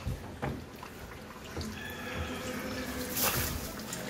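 Descaler being poured from a plastic bottle into the stainless-steel base of a Bosch dishwasher tub, with a brief knock about three seconds in.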